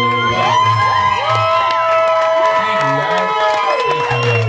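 Audience cheering and whooping as a live song ends, many voices holding overlapping cries that rise and fall at their ends.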